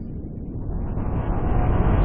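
Deep, noisy rumbling sound-effect swell that grows steadily louder and brighter, like a riser building toward a hit.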